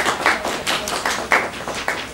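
A small group of people applauding, many hands clapping unevenly.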